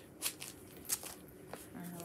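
Quiet handling noises: a few light clicks and soft rustles as a cross-stitch project and its project bag are handled.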